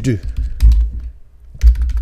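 Computer keyboard being typed on: a few sharp key clicks, two of them landing with a heavier thump, about half a second in and near the end.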